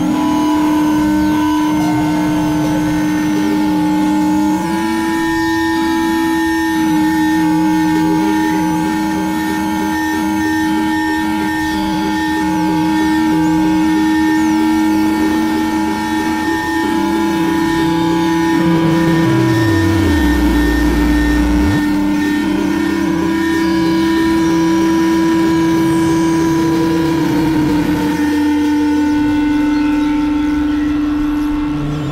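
Layered experimental electronic drone music: several sustained synthesizer-like tones held steady at once. About two-thirds of the way in, a pitch slides down into a deep low tone that lasts about two seconds.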